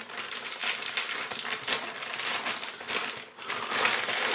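A plastic bag of oven chips crinkling and rustling as a hand rummages in it, with many quick clicks as the chips knock together. There is a brief pause a little past three seconds.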